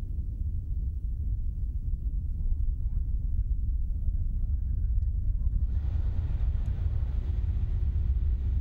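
Distant low rumble of a climbing Soyuz rocket's engines, its four strap-on boosters and core stage still burning. A faint hiss joins about six seconds in.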